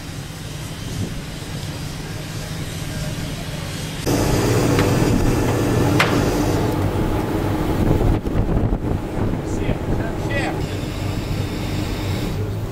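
A crane's engine running steadily as it holds a timber pack on its hook, louder after a cut about four seconds in, with a sharp click around six seconds and brief men's voices in the second half.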